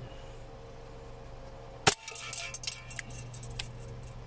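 A single shot from a WE Hi-Capa 5.1 gas blowback airsoft pistol about two seconds in: one sharp crack as the slide cycles and the BB hits an aluminium soda can and holes it. A scatter of small clicks and rattles follows for a second or so, over a steady low hum.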